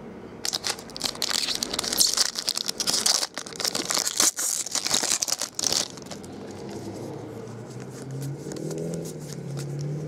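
Foil trading-card pack wrapper being torn open and crinkled by hand, a dense crackle of sharp clicks lasting about five seconds.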